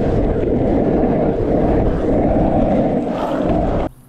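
Steady rumbling roar of skateboard wheels rolling over asphalt, mixed with wind buffeting a moving microphone. It cuts off abruptly just before the end.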